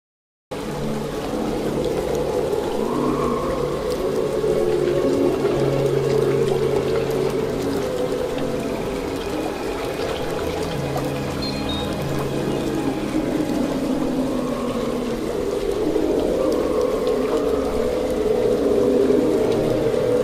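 Swamp ambience: water pouring and trickling steadily, with low held tones that shift in pitch every few seconds and faint moaning calls. It starts abruptly about half a second in.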